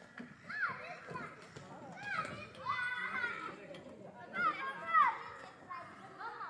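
Children's high-pitched voices calling out at play, in several short bursts, the loudest about five seconds in.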